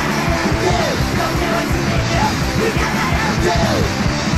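Fast hardcore punk band recording: distorted electric guitar, bass and drums at a steady loud level, with shouted vocals sliding in pitch over them.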